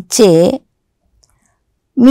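A woman's voice reading aloud in Telugu for about half a second, then near silence with a single faint tick.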